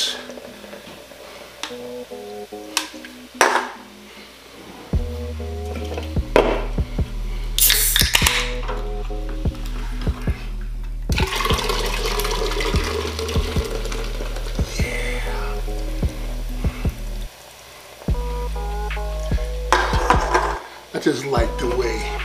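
Soda poured from two aluminium cans into two tall boot-shaped glasses, splashing and fizzing, over a hip-hop beat whose heavy bass line comes in about five seconds in. Light clinks of cans are heard now and then.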